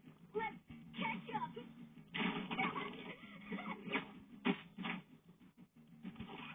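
Cartoon soundtrack playing from a TV speaker and picked up off the set: character voices with sudden sound effects, the loudest a sharp hit about four and a half seconds in, thin and muffled with no high end.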